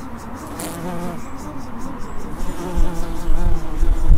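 Bumblebee wing buzz, a wavering hum that grows louder as the bee takes off and flies close by. A low rumble joins it in the last second or so.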